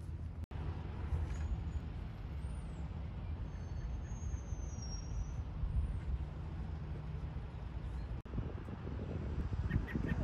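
Outdoor ambience: a steady low rumble with a few faint high chirps, broken by two brief dropouts at cuts, one about half a second in and one near the end.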